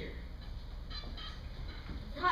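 Quiet room tone of a stage performance recording: a steady low hum with a few faint, brief sounds about a second in.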